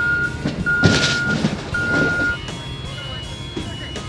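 Electronic warning beeper on a robot vehicle sounding three steady beeps, about a second apart, over vehicle noise, with a short rush of gravel about a second in; fainter, higher beeps follow in the second half.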